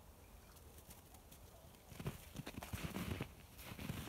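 Footsteps crunching in snow close to the microphone, starting about halfway through as an irregular run of crunches.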